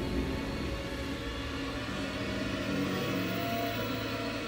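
Background music of low, long-held notes, a tense dramatic underscore that shifts to new notes about halfway through.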